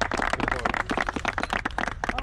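A small group of people clapping their hands, many quick, uneven claps overlapping.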